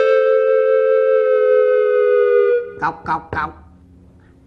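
A held electronic note, two close pitches sounding together, ends a short music cue and fades out about two and a half seconds in. Then come three quick knocks on a wooden door.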